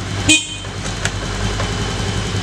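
Honda Beat FI scooter horn giving one short beep about a third of a second in, sounded as a quick check of the electrical system, over a steady low hum.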